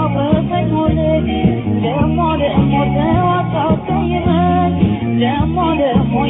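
Ethiopian popular song from an old cassette release: singing with a wavering, ornamented melody over a band with a moving bass line. The recording has its treble cut off above about 4 kHz.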